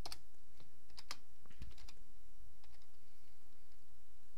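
Computer keyboard keystrokes: a handful of separate key clicks, most in the first two seconds and a few fainter ones near the end, as a short word is backspaced and retyped.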